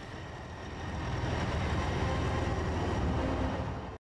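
Heavy military missile transporter vehicles rolling past, a steady low engine rumble that swells about a second in and then holds.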